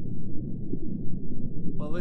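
Deep, muffled rumbling sound effect with nothing in the upper range, running steadily under an animated intro title; near the end a voice starts speaking.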